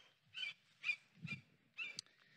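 Faint, murmured speech: a few short, quiet syllables with silence between them.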